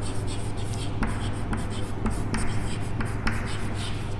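Chalk on a chalkboard as a word is handwritten: a string of short, irregular taps and scratches as each letter is formed.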